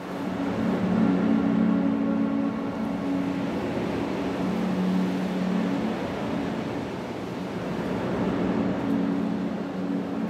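Track intro fading in: a steady wash of noise under a low drone of a few held tones, which thins out about six seconds in and returns near the end.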